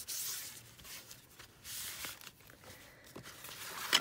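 Paper rustling and brushing as a tissue dabs glue off an envelope and the envelopes are lifted and shifted, loudest in the first second, then softer rustles.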